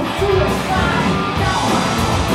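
A punk rock band playing live and loud: distorted electric guitars, bass and a driving drum kit, with the low end pulsing steadily.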